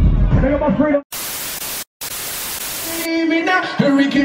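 A man's voice for about a second, then a loud burst of TV-static hiss used as an editing transition, broken by a brief dropout. It cuts off about three seconds in, when music with singing starts.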